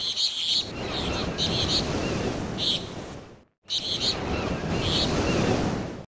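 Outdoor ambience from the shore: wind on the microphone and water, with distant voices and short high-pitched bursts. It cuts out for a moment about three and a half seconds in, then starts again.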